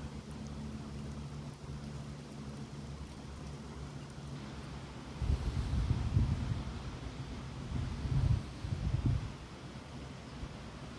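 Wind gusting outdoors, buffeting the microphone with uneven low rumbles about halfway through and again near the end, over the rustle of wind in tree leaves.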